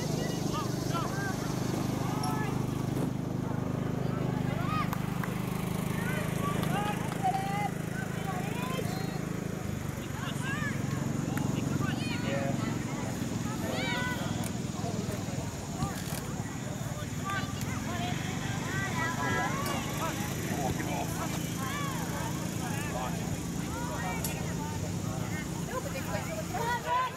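Indistinct, distant voices of players and spectators calling out across an outdoor soccer field, scattered short calls throughout, over a steady low background hum.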